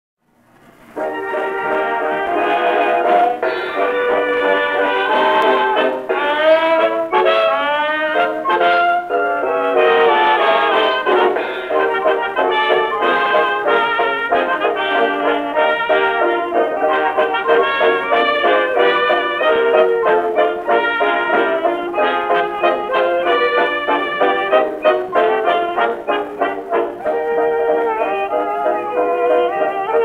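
1920s dance orchestra playing a brass-led fox trot from an acoustically recorded 78 rpm shellac disc, with a narrow, boxy sound and nothing in the highs. The music starts about a second in, with sliding glides in pitch a few seconds later.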